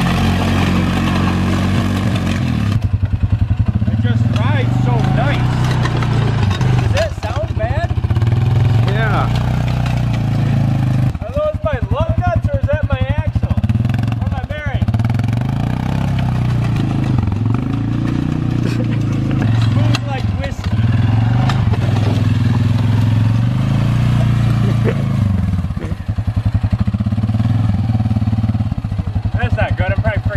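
ATV engine running and revving, its pitch and level dipping and rising every few seconds as the quad lurches along on square wheels, with clattering knocks from the wheels and chassis.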